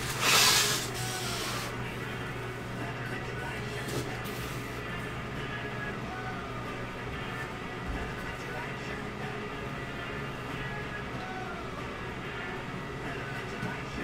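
A brief paper-and-fabric rustle of handling in the first second or two, then steady background music playing quietly.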